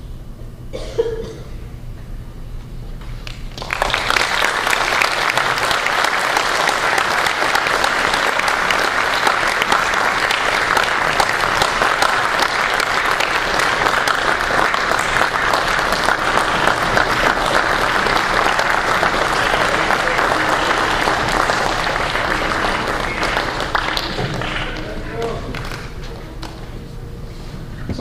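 A concert band's last held low note dies away. Audience applause starts about four seconds in, runs steadily, and fades out near the end.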